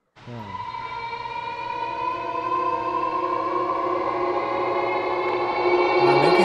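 Eerie electronic drone: a dense chord of many steady tones that starts suddenly and slowly swells louder.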